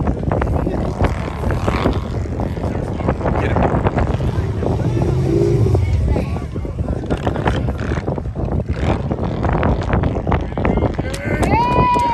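Motorcycle engines running at low speed in a stalled line of traffic, under the unclear chatter of a crowd. Near the end a high, drawn-out call bends up and down in pitch.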